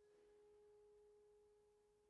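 Very faint piano tone dying away: one held pitch with weak overtones, slowly fading, near silence.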